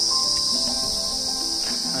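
Steady, high-pitched insect chorus droning without a break.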